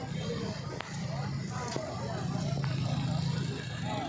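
Indistinct voices of people talking over a steady low rumble, with a few brief clicks.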